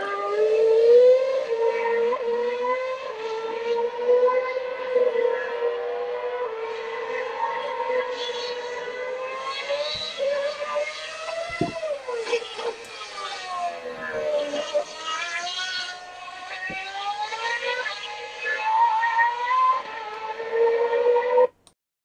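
2011 Formula One cars' 2.4-litre V8 engines running at high revs on track, a continuous high-pitched wail whose pitch slides down and back up a couple of times as the cars brake and accelerate. The sound cuts off suddenly just before the end.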